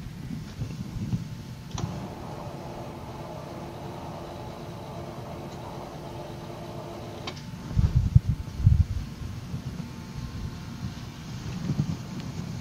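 A steady mechanical hum that switches on with a click about two seconds in and cuts off with a click some five seconds later, over low room rumble. A few low thumps come near the end.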